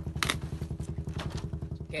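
Small fishing boat's engine running at a steady speed, a rapid even chugging that cuts off near the end.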